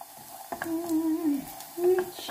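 A woman humming a tune: one held note for about a second, then a short, slightly higher note near the end.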